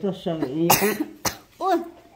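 A person's voice, broken by a short cough a little under a second in, followed by a sharp click.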